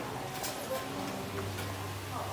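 A few sharp clicks or taps over faint background voices, with a low steady hum coming in about halfway through.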